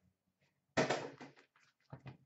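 Hobby boxes of trading cards being handled and lifted from a plastic bin: a sudden scraping rustle about three-quarters of a second in that fades quickly, then a few light knocks near the end.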